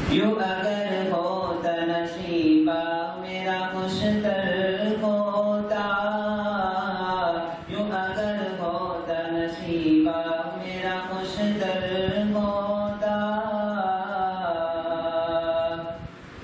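A young man's unaccompanied voice chanting verses in a melodic recitation over a microphone. He holds long, wavering notes in phrases, with short pauses for breath between them.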